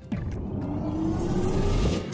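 Logo-sting sound effect: a loud rumbling whoosh that swells and rises steadily in pitch, building to a hit at the end.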